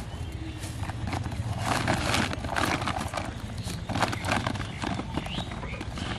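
Plastic bags and a woven sack being handled: irregular crinkling and rustling with light knocks, over a steady low background rumble.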